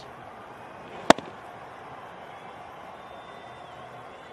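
A single sharp crack of a cricket bat striking the ball, about a second in, over steady background noise.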